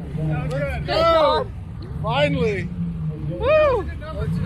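Three rising-and-falling shouted calls from people's voices, over a steady low rumble of car engines idling close by.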